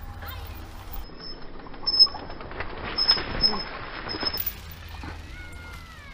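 Mountain bike rolling slowly down a steep rock slab: tyres crunching and rustling over grit and dry leaves, with sharper knocks from the bike about two and three seconds in. A thin falling squeal comes near the end.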